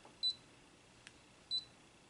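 Brother ScanNCut DX SDX225 cutting machine's touchscreen giving two short, high beeps about a second and a half apart as its menu buttons are pressed, with a faint tick between them.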